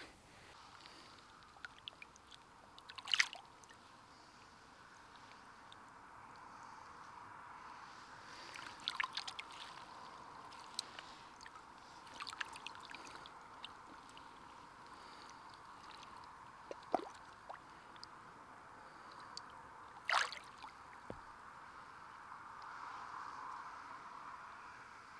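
Faint water sloshing and small splashes as a barbel and a chub are held in a landing net in the river and let go. A few sharper splashes come now and then over a faint steady background of water.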